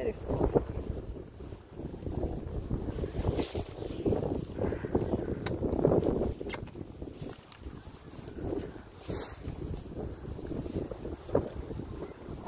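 Wind buffeting the phone's microphone in uneven gusts, a low rumbling roar that swells and drops.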